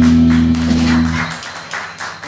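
Electric rock band ending a song on a held final chord of guitars and bass, which cuts off about a second in. Scattered audience applause runs alongside it and carries on after the chord stops.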